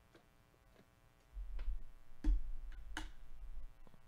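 A series of six light clicks or taps, spaced well under a second apart, the fourth and fifth loudest, over a low rumble in the middle.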